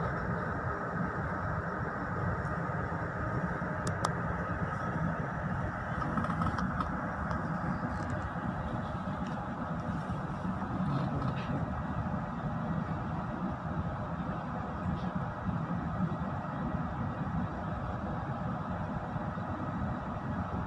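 Passenger train coaches rolling slowly past at close range: a steady low rumble from the running gear, with a few faint clicks.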